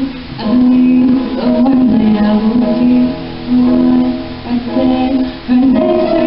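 Electronic keyboard playing a slow piano passage with long held notes.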